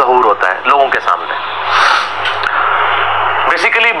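A man speaking in a lecture, with a stretch of hiss in the middle and a steady low electrical hum underneath.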